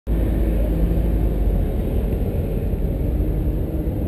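Lamborghini Gallardo's V10 engine idling, a steady low sound heard from inside the cabin.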